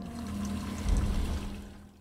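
Sound effects from the animated episode's soundtrack: a noisy rush with a low rumble that swells to its loudest about a second in and then fades away, over a steady low tone.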